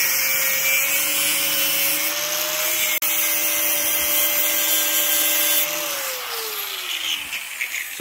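Angle grinder with a cutting disc grinding the head off a steel rivet, running at a steady pitch over a grinding hiss. Near six seconds in it is switched off, and its whine falls as the disc spins down.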